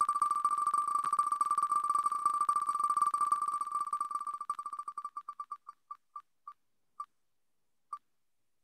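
Wheel of Names web spinner's electronic tick sound effect as the wheel turns, one beep-like tick per name passing the pointer. The ticks come very fast at first, then slow down from just past the middle to a few widely spaced ticks as the wheel comes to a stop.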